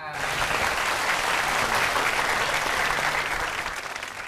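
Studio audience applauding, starting suddenly and holding steady before easing off near the end.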